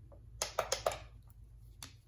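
A few light, sharp plastic clicks from clear nail swatch sticks being handled: four in quick succession about half a second in, and one more near the end.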